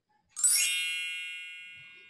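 A single bright chime sound effect rings out about a third of a second in, with a quick shimmer at the start, then fades away slowly. It marks the change to the next letter card.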